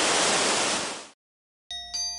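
Steady rush of a large outdoor plaza fountain's spray, fading out about a second in. After a short silence, clear ringing bell-like notes start near the end.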